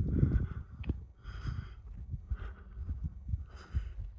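Wind rumbling and buffeting on the microphone, with a few scuffing footsteps on a paved trail about a second apart.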